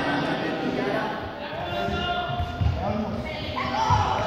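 Running footsteps thudding on an indoor sports-hall floor, starting about halfway through, over the talk of a group of people.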